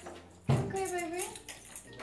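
A short wordless vocal sound begins about half a second in, its pitch dipping and then rising over about a second, over faint steady background tones.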